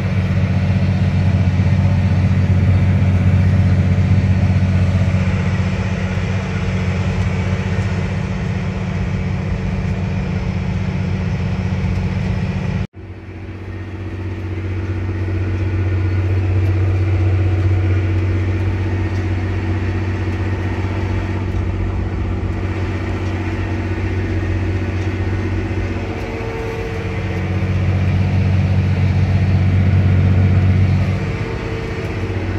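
John Deere 4955 tractor's six-cylinder diesel engine running steadily under load while pulling an air drill, a deep even drone. The sound drops out abruptly for an instant about thirteen seconds in, then builds back up.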